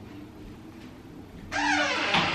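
Quiet room tone, then about one and a half seconds in a wooden interior door swings on its hinges with a loud creak that falls in pitch.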